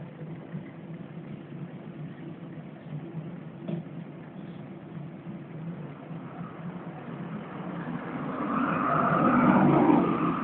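Motorcycle engines idling at a standstill with a steady low hum. Over the last few seconds a passing car grows louder, peaks near the end and begins to fade.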